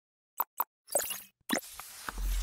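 Animated logo intro sound effects: two quick pops close together, then a rushing shimmer about a second in and another hit near the end.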